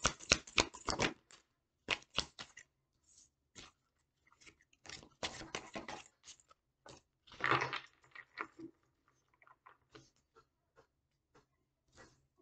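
A deck of tarot cards being shuffled by hand: quick runs of crisp clicks as the cards snap against each other, coming in several bursts, with a louder rustle about halfway through. Near the end only scattered light ticks remain as cards are handled and laid down on a wooden table.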